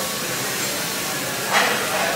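A steady hiss, with a voice coming in near the end.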